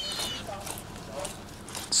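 Fillet knife cutting through a small cod's flesh along the backbone, over a steady faint hiss, with a brief high squeak at the start.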